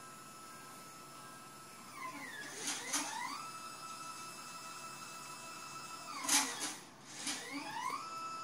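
Orion SkyView Pro GoTo mount's drive motor whining as it slews. The pitch glides up and down about two seconds in, holds as a steady whine for about three seconds, then glides again after six seconds.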